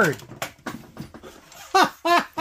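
A man's voice trailing off from an exclamation, then a man laughing in short bursts, about four a second, near the end.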